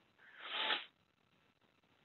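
A single brief breathy sound from the presenter, about half a second long, a little under a second in.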